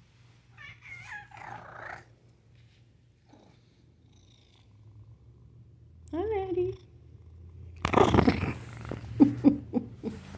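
Domestic tabby cat purring steadily, with a single meow about six seconds in that rises and falls. Near the end come loud rustling and knocks.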